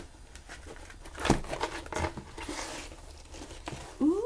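Packaging being handled, crinkled and torn open by hand to unwrap an item, with a sharp crack about a second and a quarter in and a stretch of higher tearing rustle about halfway through.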